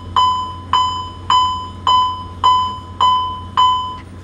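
Ship's general alarm sounding for action stations: a single-pitched bell tone struck over and over, a little under twice a second, each strike ringing down before the next, over a low steady hum.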